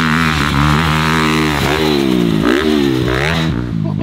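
Dirt bike engine at full throttle, revving up through the gears on the run-up to a big jump: the pitch climbs, drops at each shift about three times, then climbs again.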